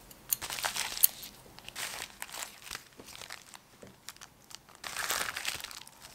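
Plastic packaging crinkling and rustling in the hands as a small clear bag is opened, in irregular bursts with small clicks, busiest in the first second and again near the end.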